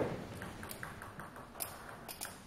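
Table tennis ball clicking against bats and table: a quick, uneven series of light, sharp ticks, the sharpest about one and a half seconds in.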